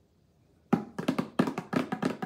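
A pair of wood-shell bongos with rawhide heads played with bare hands: a quick run of hand strikes starts under a second in, several strikes a second.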